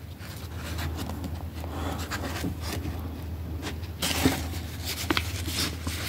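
Cotton-gloved hands handling and opening a red paper envelope: soft rubbing and paper rustling with small clicks, denser from about four seconds in, over a steady low hum.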